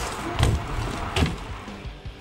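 Two thuds, about three-quarters of a second apart, as a BMX bike's tyres hit a wooden ramp wall, over background music.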